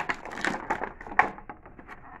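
Clear plastic packaging crinkling and crackling in irregular snaps as an action figure is worked out of its bag.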